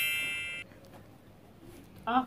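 A bright, bell-like ding ringing out and fading, cut off abruptly about half a second in, followed by quiet.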